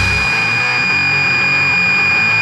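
Noisy rock record: the heavy low end and drums drop out just after the start, leaving a loud, steady high-pitched whine held over a sparse guitar part.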